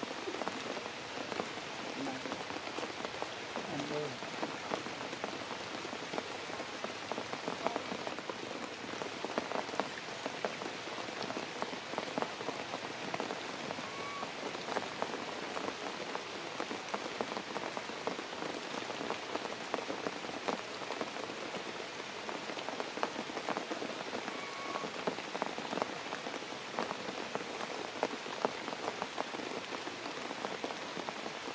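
Rain falling on forest leaves: a steady, dense patter of drops.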